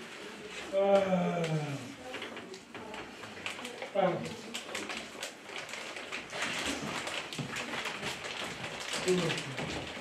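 A man's voice in a small room: a few drawn-out exclamations that fall in pitch, with a rapid patter of small clicks and crackles from about a third of the way in.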